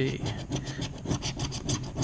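A red scratcher tool scraping the latex coating off a scratch-off lottery ticket in quick back-and-forth strokes, about six or seven a second.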